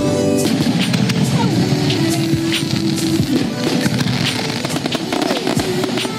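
Aerial fireworks going off: repeated sharp bangs and crackling bursts, with epic orchestral soundtrack music playing underneath.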